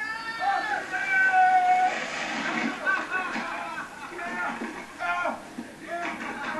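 People shouting and yelling, with one long held yell about a second in.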